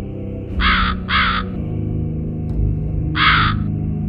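A crow cawing three times, two caws close together and then a third a couple of seconds later, over a low, dark music drone.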